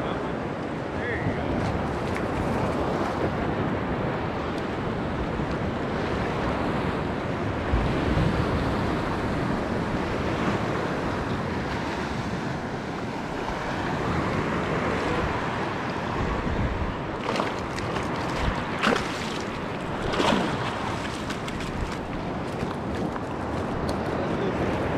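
Steady wash of small surf waves and water around a wading angler, with wind on the microphone. A few brief sharp sounds come about three quarters of the way through.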